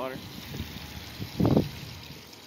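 A man's voice finishes a word, then a steady outdoor hiss of wind on a handheld phone's microphone, with one short louder sound about one and a half seconds in.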